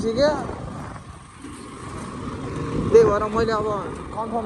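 Motorcycle riding along a road: a steady low engine rumble and rushing noise. Brief talking at the very start and again about three seconds in.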